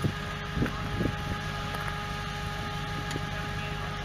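An off-road vehicle's engine running steadily, with a few light knocks in the first second or so.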